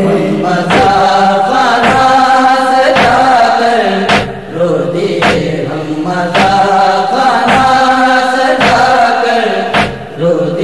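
A male reciter chanting an Urdu noha, a Shia Muharram lament, in long held melodic lines, over a steady beat about once a second.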